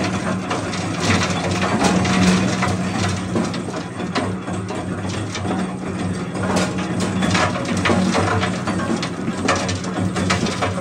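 Rock salt jaw crusher running: a steady motor hum under a dense, irregular clatter of crushed salt chunks pouring from the discharge chute onto the pile.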